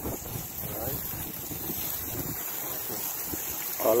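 Wind buffeting the microphone in uneven low gusts, with a steady high hiss and a faint voice about a second in.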